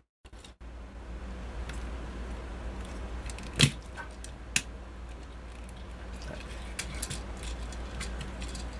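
Plastic Transformers action figure being handled and twisted during its transformation, with scattered clicks of its parts and a sharp click about three and a half seconds in and another about a second later, over a steady low hum.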